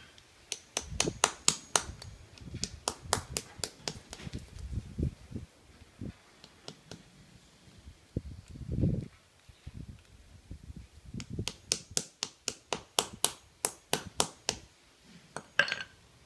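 Claw hammer tapping among broken plaster of Paris mould fragments on a concrete floor, striking beside the part to crack the plaster free. Two runs of quick sharp taps, about five a second, each a few seconds long, with a pause and a duller thud between them.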